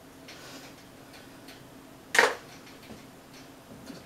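A short faint rustle near the start, then one sharp click about two seconds in, a small hard object being handled or set down.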